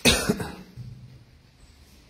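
A person coughs twice in quick succession, loud and short, right at the start.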